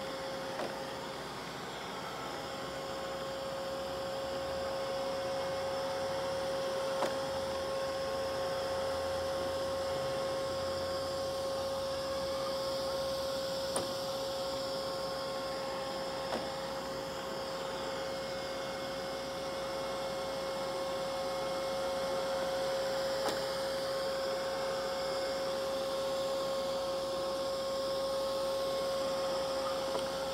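Neato robot vacuum running on carpet: a steady motor hum with a high whine over the suction hiss, and a few faint ticks along the way.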